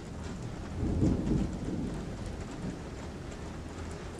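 Steady rain with a low rumble of thunder swelling about a second in and dying away.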